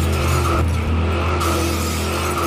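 Car tires skidding and squealing, with a deep steady rumble underneath.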